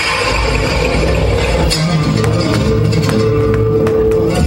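Loud flamenco rumba music with guitar, with sharp percussive hits at irregular moments.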